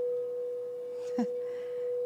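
Frosted crystal singing bowl ringing with one steady, pure sustained tone.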